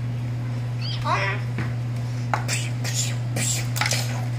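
A child making vocal play sound effects: a high, gliding, meow-like cry about a second in, then several short hissing bursts, over a steady low hum.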